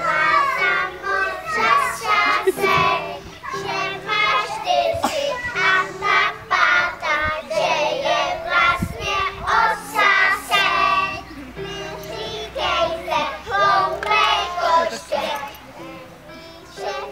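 A group of young children singing a song together, accompanied by held notes on an electronic keyboard.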